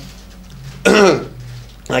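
A man clears his throat once, about a second in, with a short rasp, then starts to speak.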